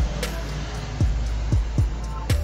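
Background music with a beat of deep bass drum hits that each drop quickly in pitch, spaced unevenly, over a steady low hum.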